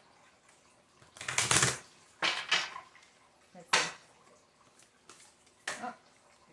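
A deck of oracle cards being shuffled by hand: four short shuffling bursts, the loudest about a second and a half in.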